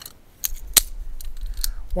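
Metal plates of a CQ Quick Connect quick-release antenna mount being slid and seated by hand: a series of short sharp metal clicks and scrapes.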